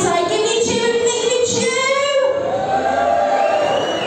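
Live singing through a venue's sound system: a high voice holds long, drawn-out notes, with a long held note in the second half.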